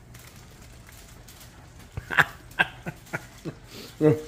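A man laughing in a run of short bursts from about halfway through, over a faint steady low hum.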